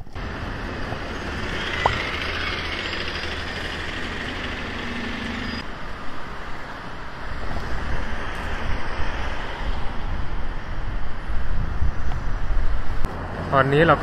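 City street traffic: double-decker buses and cars running past on the road. The sound changes abruptly about five and a half seconds in, from a steady hum to a more uneven traffic noise.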